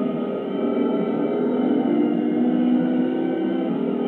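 Film soundtrack played from a VHS tape through a television's speaker: several steady, overlapping sustained tones, muffled and with no treble.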